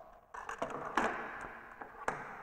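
Handling noise of a table saw's removed plastic blade guard against the saw's table: a rustle with a few light knocks and taps, the sharpest about a second in.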